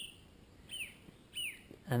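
A small bird chirping twice, each chirp short and falling in pitch, about two-thirds of a second apart, over faint outdoor background noise.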